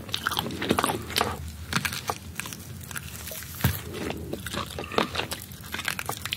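Close-miked biting and chewing of steamed sand iguana (a small whole lizard), its skin and meat crunching and crackling in irregular sharp bites, the loudest crunch about two-thirds of the way through.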